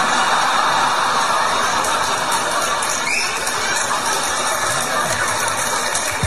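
Stand-up comedy audience laughing and applauding at a punchline, a steady wash of clapping and laughter.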